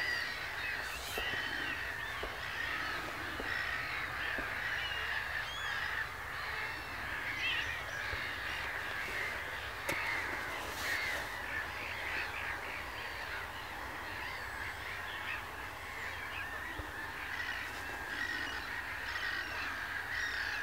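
A flock of gulls, largely black-headed gulls, calling without a break: a dense chorus of overlapping harsh calls.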